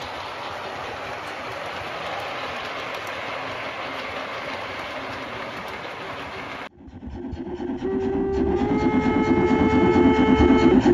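O-gauge model freight wagons rolling along the track with a steady rumble. After a sudden cut, a model steam locomotive sounds close by with a fast rhythmic beat, and from about a second later a long whistle that steps up slightly in pitch.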